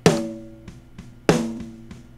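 Solo snare drum track with no EQ or compression: two hits about a second and a quarter apart, each leaving a ringing tone that fades slowly.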